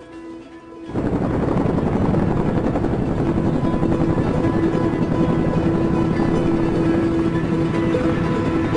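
Chinook helicopter rotors and engines, loud and steady, cutting in suddenly about a second in over background music.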